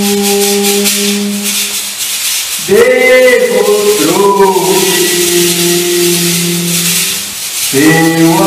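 A man singing a worship song through a microphone and speakers in long, drawn-out held notes, with a maraca shaken in an even rhythm.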